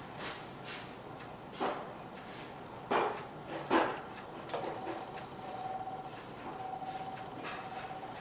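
Quiet room sound with a few brief soft scuffs and rustles, the clearest about a second and a half in and a pair around three seconds in. A faint steady whine comes in about halfway.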